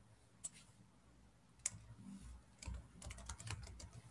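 Faint typing on a computer keyboard: a few separate keystrokes, then a quicker run of them in the last second or so.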